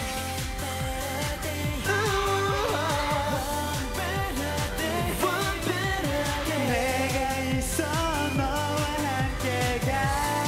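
K-pop dance song performed by a male group: male voices singing over a pop backing track with a steady beat.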